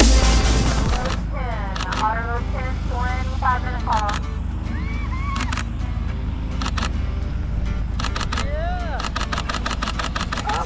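Background music that stops about a second in, followed by a steady low rumble and a series of excited shouts and whoops, some falling and some rising and falling in pitch. Sharp clicks are scattered through.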